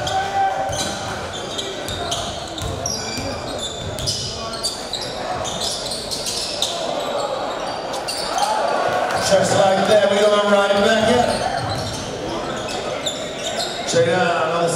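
Live basketball game in a gym: a basketball dribbled on the hardwood court under crowd chatter and shouting that echoes in the hall. The crowd grows louder about eight seconds in, as a shot goes in at the rim.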